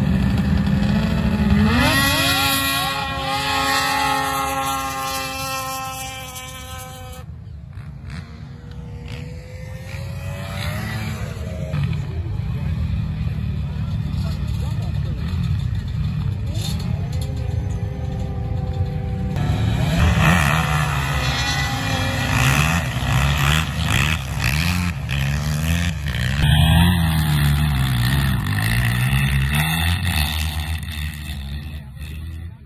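Snowmobile and dirt-bike engines revving and running, heard across several short clips joined by abrupt cuts. Early on, one engine climbs in pitch and then holds a steady note.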